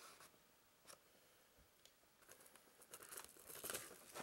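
Near silence, with faint rustling and crinkling in the second half.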